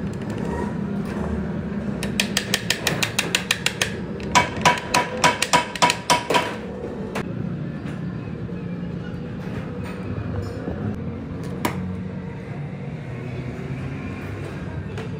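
Hammer tapping on metal sewing-machine parts during assembly. A quick run of light taps begins about two seconds in, followed by a slower run of louder, ringing metallic strikes that stop after about six seconds. A steady low workshop hum runs underneath, with one more sharp click near the end.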